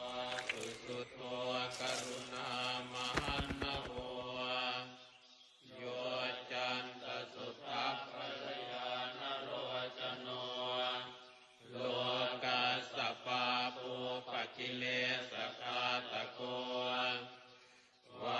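Buddhist chanting: voices chanting in long, pitched phrases over a steady low drone, broken by two short pauses. A brief run of rapid clicks comes about three seconds in.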